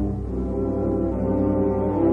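Ballet score with low brass instruments holding sustained chords, the notes shifting every half second or so.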